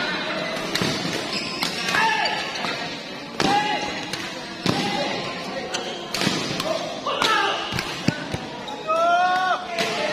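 Badminton doubles rally: rackets striking the shuttlecock in a quick, uneven run of sharp hits, with shoes squeaking on the court mat. A longer squeal comes near the end.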